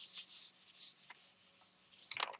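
A hand rubbing over a sheet of thin paper laid on an inked gel printing plate, burnishing it down to pick up the print: a run of papery swishing strokes, strongest in the first half second and then thinning into shorter swipes.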